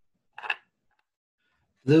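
Near silence, broken once about half a second in by a short, soft hiss-like noise. A man's voice starts right at the end.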